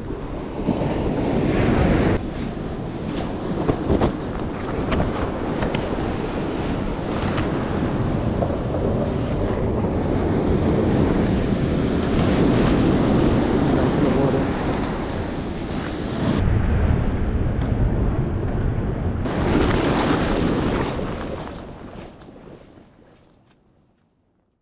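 Surf washing onto a beach, with wind buffeting the microphone, fading away over the last few seconds.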